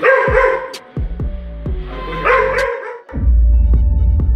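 Dalmatian barking in two bouts about two seconds apart, over background music with repeated falling bass strokes. A heavy, steady bass takes over near the end.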